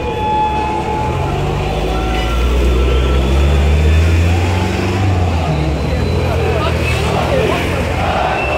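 A motor vehicle's engine running close by, its low hum building over the first few seconds and easing off toward the end, over the noise of a large crowd.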